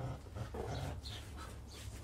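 A puppy's quiet breathing and small noises while it grips a tug toy in its mouth during bite training.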